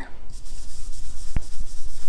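Ink blending brush rubbing over cardstock, a steady scratchy swishing as blue ink is blended lightly onto the paper around a mask. One sharp click sounds about halfway through.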